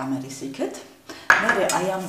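A voice speaking, with a sharp clatter of kitchenware about a second in.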